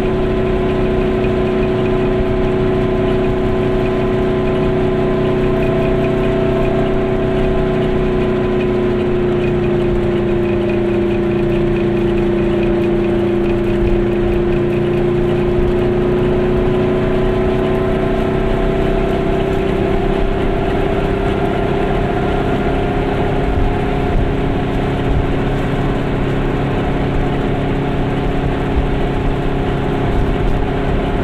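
Goggomobil's air-cooled two-stroke twin engine running steadily while the car cruises along a country road. Its pitch sags slightly around the middle and rises again later.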